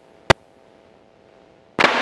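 Aircraft radio feed gone quiet between transmissions, with a faint steady hum and a single sharp click about a third of a second in. Near the end a new radio transmission cuts in abruptly.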